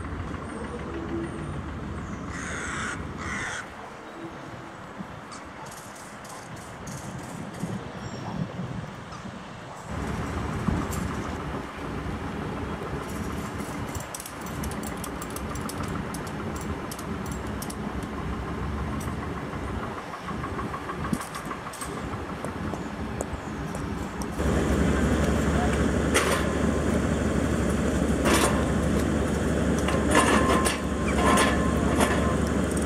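Outdoor ambience of a work site with a motor running and faint voices. In the last five or six seconds a louder, steady engine hum takes over.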